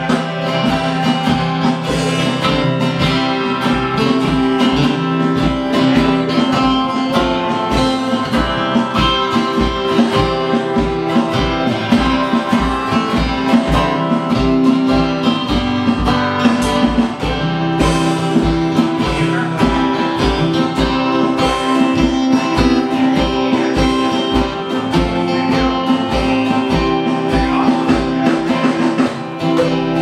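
Live acoustic band playing without singing: two acoustic guitars strumming chords, one of them a 12-string, over a steady kick-drum beat of about two beats a second.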